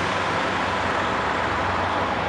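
Steady outdoor vehicle noise of semi trucks and traffic: a low engine hum under an even hiss that holds without change.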